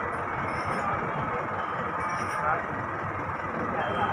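Road traffic: vehicles passing on the road by the stop, with indistinct voices in the background.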